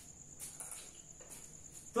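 A cricket's steady, high-pitched trill in the background, with a few faint scratchy strokes of a marker on a whiteboard.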